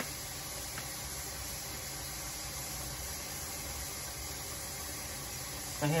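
Steady, even background hiss of room noise, with a faint tick near the start and another about a second in.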